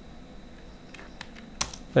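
Computer keyboard keys being typed: a few separate keystrokes in the second half, over a low steady room background.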